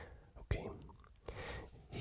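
Soft whispered breath sounds close to the microphone, with a faint click about half a second in.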